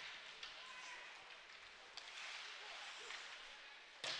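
Faint ice rink ambience of live hockey play: skates on the ice, with a few faint stick or puck taps and low voices.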